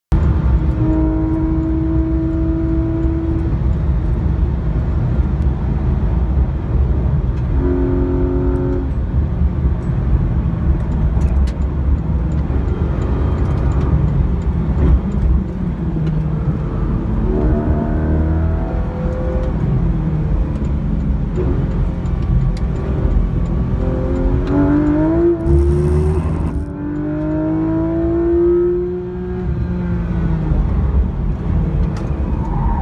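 Porsche 991 GT3 RS's naturally aspirated flat-six at high revs under full throttle, heard from inside the cabin over steady tyre and road rumble. The engine note holds steady at first, then rises in pitch several times as the car accelerates, with a short drop in loudness about 26 seconds in.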